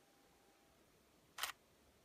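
DSLR shutter firing once, about one and a half seconds in, triggered automatically as the motorized pan/tilt head shoots a panorama frame by frame. Before it, a faint steady whine stops under a second in.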